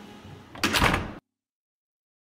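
Faint steady background, then a short, loud noisy burst lasting about half a second, after which the sound cuts off abruptly to silence.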